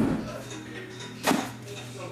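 A cardboard trading-card box being handled and set down on a table: a knock at the start and a second, louder thud a little over a second in.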